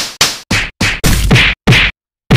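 A rapid series of about six loud, sharp whack-like hits, each cutting off abruptly and several carrying a falling tone: edited-in impact sound effects.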